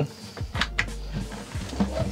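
Knocks and scrapes of a wooden portable dry-toilet box being handled and pushed back into its compartment.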